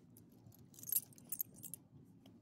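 Metal tag and leash clip on a dog's collar jingling as the dog is rubbed and wriggles on its back. There are a few short jingles, the loudest about a second in.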